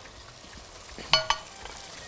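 Tomato slices frying in oil in a pan, a steady sizzle. Two short ringing clinks come about a second in.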